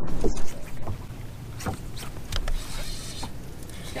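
Low, steady rumble of wind and water around a fishing boat on a lake, with a few faint clicks and a brief hiss about three seconds in.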